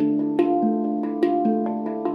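Steel handpan played with the hands: a quick run of struck notes, each a clear metallic tone that rings on and overlaps the next.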